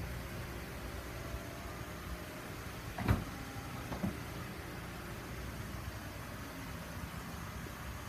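A steady low hum with faint tones in it, with a sharp click about three seconds in and a softer one a second later.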